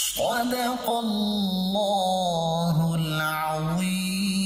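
A reciter's voice intoning "Sadaqallahul Azeem" in a chanted melody, drawing out long held notes with slight dips and rises in pitch. This is the customary phrase that closes a Quran recitation.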